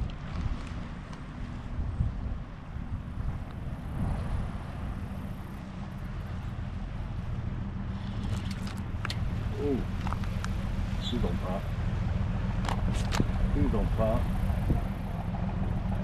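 Engine of a shrimp boat running on the water, a steady low hum with several even low tones that slowly grows louder. A few sharp clicks come in the second half.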